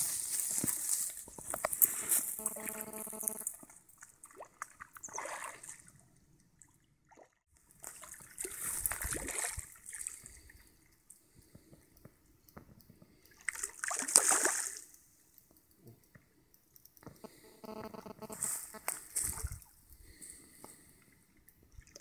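Water splashing in about five short bursts as a hooked carp thrashes at the surface beside a landing net.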